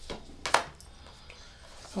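Hands handling a tarot deck, with two short sharp clicks as cards are pulled and snapped. The second click, about half a second in, is the louder.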